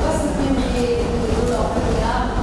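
A voice speaking over a steady low rumble.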